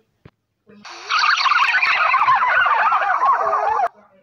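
A loud, rapidly warbling call with a looping, wavering pitch. It starts about a second in, lasts about three seconds and cuts off suddenly.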